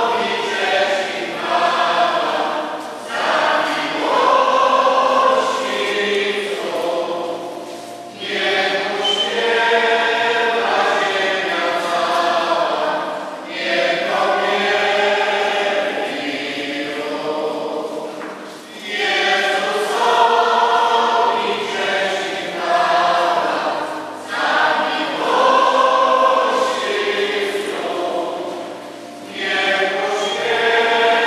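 Many voices singing a Communion hymn together, in phrases about five seconds long with brief pauses for breath between them.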